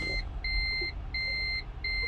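Toyota Prius in-cabin reverse-gear warning beeper sounding a steady, even series of high beeps, about three every two seconds, as the car is put in reverse and the reversing camera comes on.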